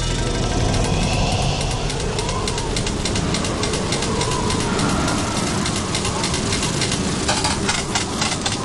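Steady hiss of water spraying hard from garden sprinklers.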